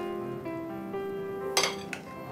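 Background music of held notes changing in steps, with one sharp clink of a metal spoon against a glass mixing bowl about one and a half seconds in, as paneer cubes are tossed in a thick paste.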